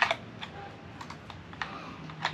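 Hard plastic clicks and taps as a plastic neck-strap holder is fitted onto a DJI Mini 2 remote controller. A sharp click at the start is followed by about half a dozen lighter ones.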